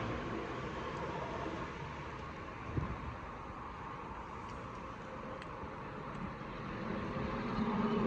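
Steady background rumble of road traffic, rising slightly near the end, with one brief knock about three seconds in.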